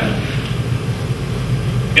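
A steady low mechanical hum with a light hiss, with no speech.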